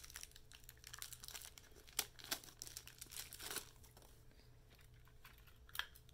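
Faint crinkling and small clicks of hands handling a replacement battery and the plastic sensor of a BioTel heart monitor during a battery change. The handling is busiest in the first three seconds or so, with a sharp click about two seconds in and another near the end.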